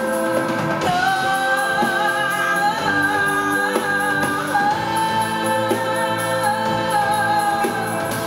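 A woman singing a soul song live, holding long sliding notes over a band playing a steady beat.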